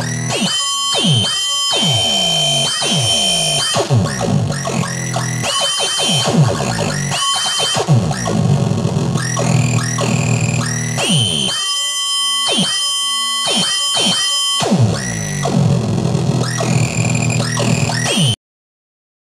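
Synthrotek Chaos NAND Eurorack noise oscillator module clocked through its three CV inputs by a Circuit Abbey G8 clock divider in binary mode, playing an irregular, glitchy electronic beat. Short pitched hits drop steeply in pitch over held buzzing tones and noise.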